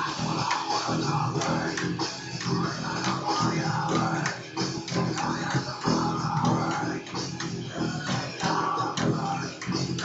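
Electric bass guitar playing a rhythmic rock riff, recorded through a low-quality webcam microphone.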